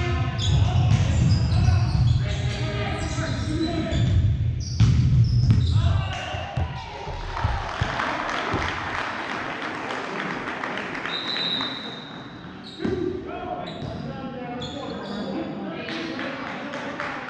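Volleyball game sounds in a reverberant gym: players and spectators shouting through the rally. Then a spell of clapping and cheering after the point, a short high referee's whistle about eleven seconds in, and a sharp ball impact soon after.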